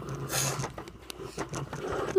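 Rustling and handling noise, loudest about half a second in, followed by a few scattered clicks and scrapes.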